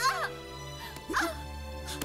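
A wooden board strikes twice, about a second apart, and each blow is followed by a woman's short cry of pain. Background music plays throughout.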